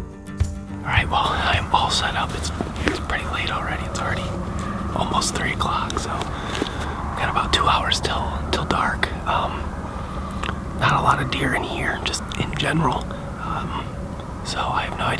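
A man speaking in a whisper, the words hard to make out.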